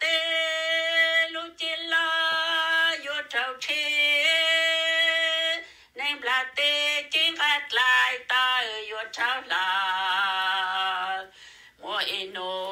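A solo voice singing a slow melody in long held notes, with short breaths between phrases and a lower, wavering note held near the end.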